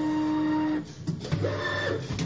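Servo drives of a roll-to-roll screen printing unit running at raised speed: a steady motor whine that cuts off abruptly just under a second in.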